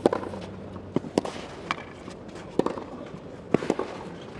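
Clay-court tennis rally heard from court level: a series of sharp pops of the ball off the racquet strings and bouncing on the clay, about seven in all, irregularly spaced over a steady low background.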